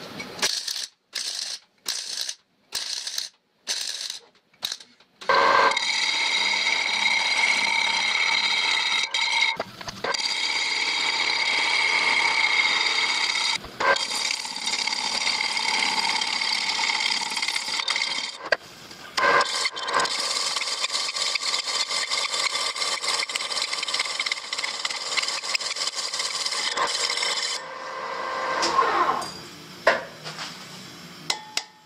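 A power tool working the steel pulley: about eight short bursts first, then a long steady run with a shrill cutting or grinding hiss over several held tones. Near the end the sound falls in pitch as the motor spins down.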